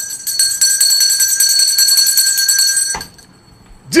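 An electronic alarm-like ringing sound effect: several steady high tones with a fast trill, lasting about three seconds and then cutting off suddenly.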